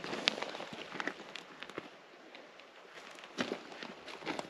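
Boots stepping on loose desert gravel and rock: scattered, irregular crunches and clicks that thin out around the middle.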